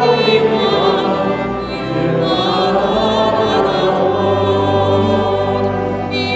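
Vocal trio of two women and a man singing in harmony, the voices held with vibrato; a low sustained note comes in underneath about four seconds in.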